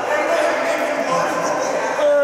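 People's voices talking and calling out over one another in a large arena, with no clear words.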